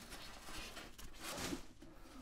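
Faint rustling and soft handling noises from a padded fabric gig bag as a carbon fibre guitar body is drawn out of it.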